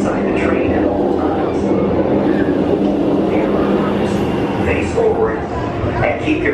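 Steel roller coaster train running along its track with a steady rumble, riders' voices over it.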